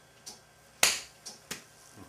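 Four sharp clicks at uneven spacing, the second, about a second in, much the loudest.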